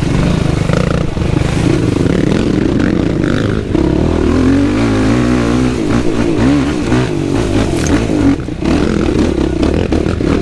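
Yamaha YFZ450R quad's new single-cylinder four-stroke engine being ridden on its break-in. Its pitch rises and falls with the throttle, with a brief let-off about four seconds in and again a little past eight seconds.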